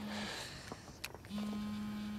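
Mobile phone vibrating: a steady low buzz that stops just after the start and comes again about a second and a half in, lasting about a second.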